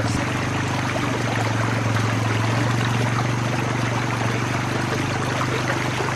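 Shallow stream water rushing steadily, with a low rumble underneath, as water washes through a plastic gold pan held tilted in the current to wash off the top layers of gravel.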